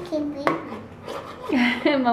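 A metal spoon clicks once against a plastic high-chair tray about half a second in, between short bits of voice, with talking starting near the end.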